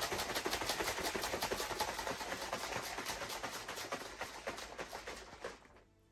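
Plastic shaker bottle shaken hard to mix pre-workout powder into water, the liquid sloshing in fast, even strokes. The strokes get softer near the end and stop just before it.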